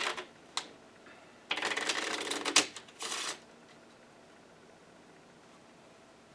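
A deck of playing cards being shuffled in the hands: a brief rustle, then a rapid run of card flicks lasting about a second, and a shorter second run just after.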